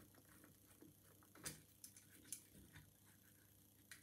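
Near silence with three faint clicks from a screwdriver turning a cover screw on a steel mortise lock case.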